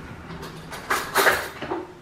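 Kitchen handling clatter: several short knocks and a rattle, loudest about a second in, as things are moved about while a spoon is fetched.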